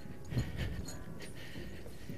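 Footsteps of a person in heavy firefighter gear going down steel-grated stairs: one duller thud about half a second in, then fainter knocks, over a steady background hiss.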